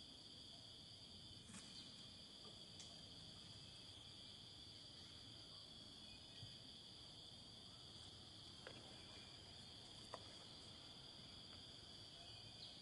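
Faint, steady chorus of forest insects: an unbroken high drone, with a few soft clicks scattered through it.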